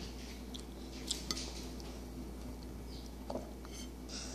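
A toddler eating corn kernels: a few small sharp clicks and smacks about a second in and again past three seconds, over a steady low electrical hum.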